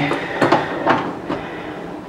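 A few sharp clicks and knocks, about one every half second, as the lid lever of a Britt Espresso capsule coffee machine is lifted open to take a capsule.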